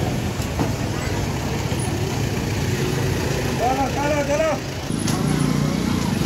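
Street traffic: a motor vehicle engine runs steadily under people's voices, with a short raised voice about four seconds in.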